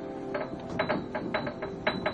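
Upright piano played: a quick run of notes, about five or six a second, ringing over held tones.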